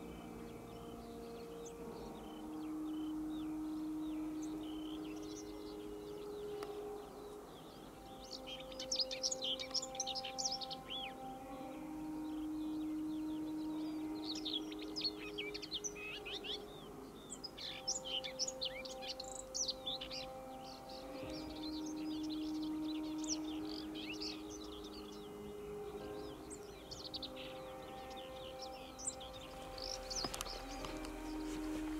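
Many small birds chirping and singing in quick, high twitters over soft background music of slow, held chords. The bird song is busiest from about eight seconds in.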